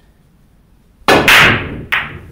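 Pool break shot on a ten-ball rack. About a second in, the cue tip strikes the cue ball, and a quarter second later the cue ball cracks into the rack. The balls then clatter as they scatter, with one more sharp click near the end.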